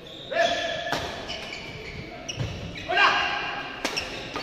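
Badminton rally in a large echoing hall: two sharp racket hits on the shuttlecock, about three seconds apart, amid squeaks and shouts from the players moving on the court.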